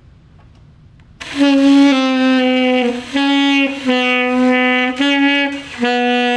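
A saxophone playing a string of held notes, starting about a second in; the pitch steps among a few nearby notes with short breaks between some of them.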